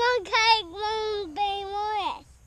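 A young child's high-pitched voice in a drawn-out, sing-song squeal of several held notes, dropping in pitch at the end.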